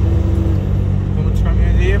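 A semi truck's engine heard from inside the cab, a steady low drone as the truck rolls slowly forward.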